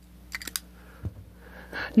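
Light clicks and taps of fountain pens being handled and set down on a desk: a quick cluster of clicks about half a second in and a single click about a second in.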